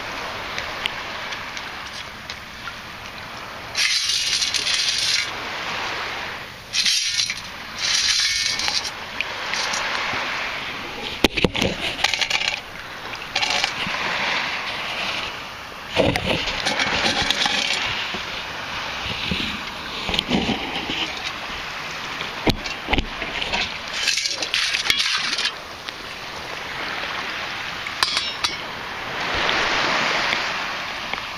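Water sloshing and splashing as a metal detector and sand scoop are worked in shallow water, with several louder bursts of splashing and a few sharp clinks and rattles from the scoop's contents.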